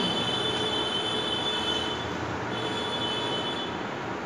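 Chalk writing on a blackboard, with a high thin squeal in two stretches of a second or two each, over steady room noise.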